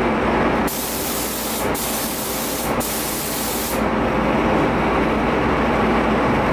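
Gravity-feed paint spray gun spraying the third coat of red base coat onto a spray-out card: a loud air hiss in three passes of about a second each, separated by two brief breaks.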